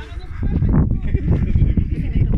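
Wind buffeting the microphone, a loud, steady low rumble, with a person's short voiced sound in the first second.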